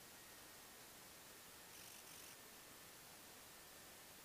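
Near silence: a faint steady hiss with a faint high tone, and a brief, slightly louder hiss about two seconds in.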